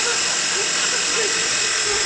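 Metal lathe running with its boring head cutting into an aluminium motorcycle crankcase to enlarge the cylinder opening: a steady machining hiss and motor hum.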